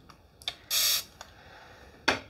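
A spray bottle misting water into the hands once: a light click, then a short, even hiss of spray lasting about a third of a second, with a faint click after it.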